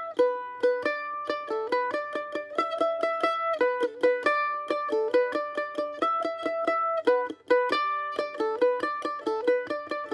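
F-style mandolin played with a pick: a quick single-note melody line, several notes a second, picked against the ringing open high E string as a drone and double stop. There is a brief break about seven seconds in.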